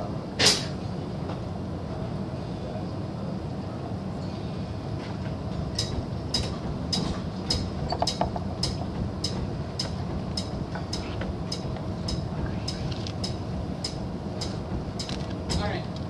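Between-song lull on stage: a steady low hum from the band's amplifiers, one sharp click about half a second in, and from about six seconds in a run of light ticks about twice a second.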